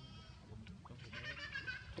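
Young macaque giving a high, squealing call with a wavering pitch from about halfway through, lasting most of a second.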